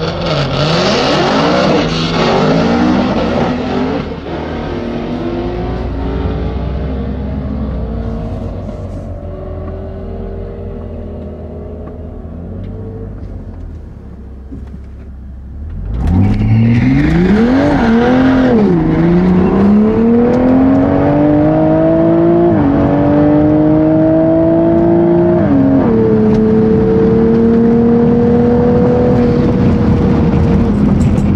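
Toyota GR Supra (MKV) engine heard from inside the cabin during a quarter-mile drag pass. The first seconds are loud revving and noise; then a lower, slowly rising engine note while the car waits to launch. About sixteen seconds in, the car launches: the engine note jumps up and climbs, drops at each upshift, and holds a steady high note over the last few seconds.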